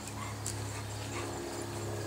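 An American Bully dog makes a few faint short sounds over a steady low hum.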